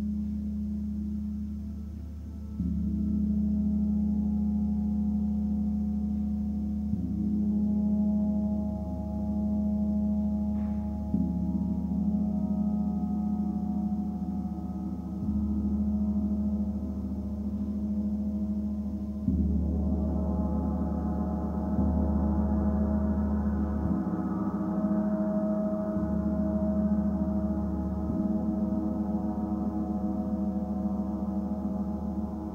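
Large Chiron planetary gong played with a soft mallet, its deep hum sustained and renewed by a fresh stroke every few seconds. About two-thirds of the way through it swells and grows brighter as higher overtones build.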